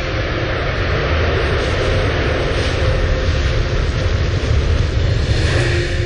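Jet aircraft flying overhead, a loud continuous rushing roar over a deep rumble that swells slightly near the end.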